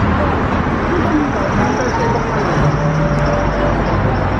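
Busy street ambience: steady traffic noise from the road, with scattered voices of passing pedestrians.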